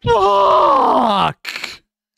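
A man's loud, drawn-out groan that slides down in pitch for over a second, followed by a short breathy exhale.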